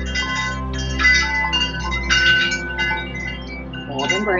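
Calm new-age background music: a steady low drone with bright chimes ringing in three clusters, about a second apart.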